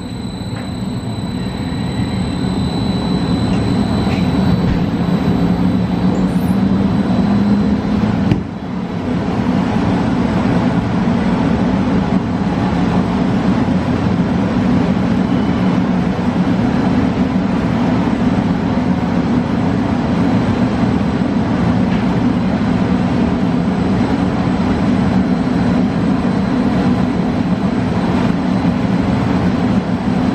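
Coin-operated tornado simulator booth's blower running at full blast, a loud steady rush of wind. It builds over the first few seconds, dips briefly about eight seconds in, then holds steady.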